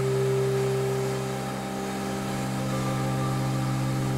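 Background music: a steady ambient drone of sustained low tones with no beat.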